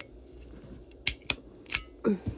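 A stapler clicking three times in quick succession in the second half, with sharp clicks as it is pressed to put a staple into a plush toy.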